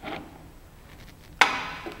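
Faint handling as the 4x objective is unscrewed from a student microscope's revolving nosepiece, then a single sharp knock with a short ring about one and a half seconds in.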